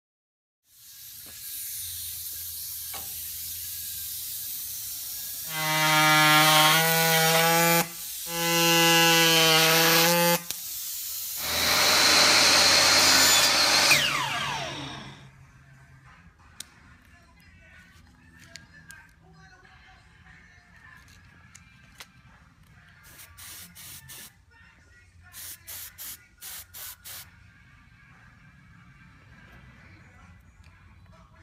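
Power tools running in a woodworking shop: a motor-driven tool runs twice for a couple of seconds each at a steady pitch, then a louder cutting tool runs and winds down. Quieter scattered taps and rattles follow.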